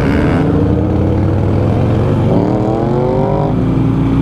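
Motorcycle engines underway with a steady low rumble. Starting about two seconds in, an engine revs up, its pitch climbing for about a second before it drops back to a steady tone near the end.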